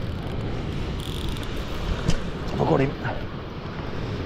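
Fixed-spool sea-fishing reel being wound in quickly after a bite, as the angler reels to find out whether a fish is hooked, over a steady background rush.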